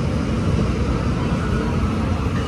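Electric metro train pulling into the station platform: a steady, even rumble of wheels on rails that stays level as its cars pass close by.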